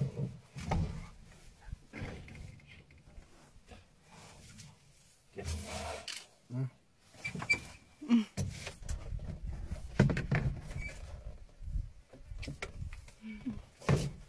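A cheetah at close range making short, separate calls, mixed with knocks and rustles from people moving about in the vehicle.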